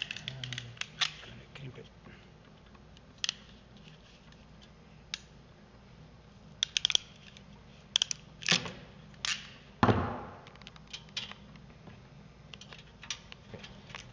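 Hand crimping tool clicking and snapping in irregular bursts as it is worked onto a yellow ring terminal for a replacement ground cable. The loudest event is a longer crunching squeeze about ten seconds in.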